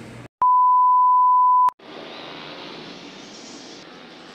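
A loud, steady electronic beep at one pitch, held for just over a second, with dead silence on either side of it: an edit-inserted tone, not a live sound. About two seconds in, a steady hiss of outdoor street noise starts.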